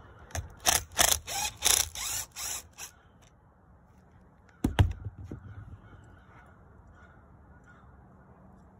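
Handling noise from tools and saw parts being moved about on a wooden bench: a quick run of sharp rustling scrapes in the first three seconds, then a single knock a little under five seconds in.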